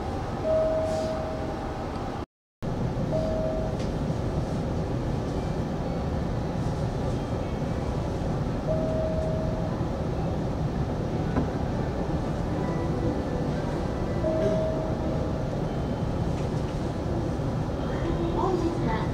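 Steady low rumble and hum of a Hanshin 5500 series electric train's on-board equipment while the train stands still, with a short faint steady tone now and then. The sound drops out completely for a moment about two seconds in.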